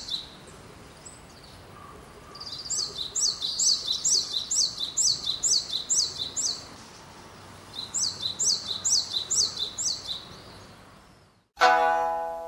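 A small songbird singing fast runs of repeated high down-slurred notes, about three a second: one long run through the middle and a shorter one later, over a soft outdoor hush. The sound cuts out near the end, and a plucked string instrument starts with loud notes.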